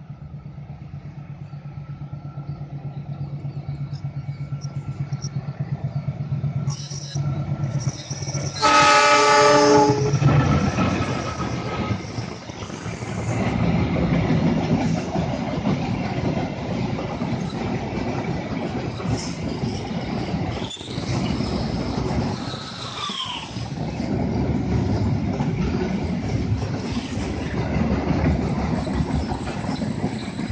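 Diesel locomotive hauling a container freight train: its engine hum grows louder as it approaches, then it sounds its horn in one loud blast of about a second and a half, about nine seconds in. The locomotive and the long line of container wagons then pass close by with a steady rumble of wheels on the rails.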